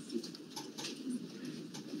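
Quiet courtroom room tone: a faint low murmur with a few soft clicks scattered through it.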